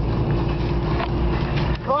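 Steady low rumble of a car driving, heard inside the cabin, with a steady hum over it. It drops away near the end.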